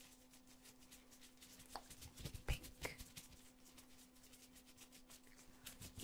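Faint crinkling and rubbing of latex gloves as gloved fingers wiggle close to the microphone, with a few slightly louder clicks between about two and three seconds in.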